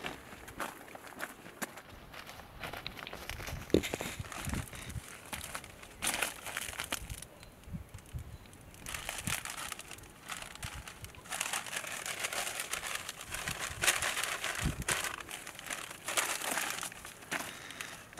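Irregular rustling and crinkling of soybean plants brushed and plucked by hand while walking through the rows, with a paper sample bag crinkling, and scattered small snaps and clicks.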